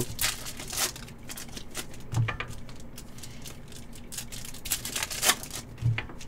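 Foil trading-card pack wrapper being torn open and crinkled by hand, in irregular crackles, with a soft low thud about two seconds in and another near the end.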